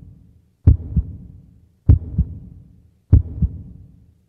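Heartbeat sound effect: a slow lub-dub, a pair of low thumps about a third of a second apart, repeating about every one and a quarter seconds, three times.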